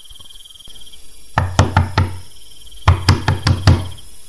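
Knocking on a wooden door in two rounds of quick, heavy knocks, about four and then about five, with crickets chirping faintly behind.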